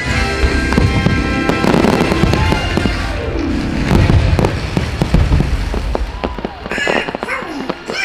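Aerial fireworks shells bursting and booming in quick succession over a loud show soundtrack of music. The bursts are densest through the first six seconds and thin out near the end.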